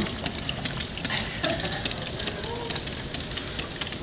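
Small homemade plastic water turbine spinning under water run down a tube from a bottle, giving a rapid, irregular clicking over a low wash of noise.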